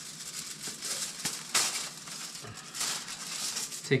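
Seasoning shaken from a shaker container over fish on foil: a string of dry rattling shakes of the granules, the strongest about one and a half seconds in.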